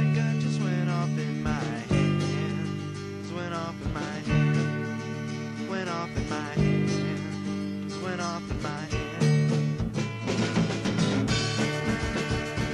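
Indie-rock song in a stretch without lyrics: guitar-led band with chords changing about every two seconds over drum hits. The playing gets busier about ten seconds in.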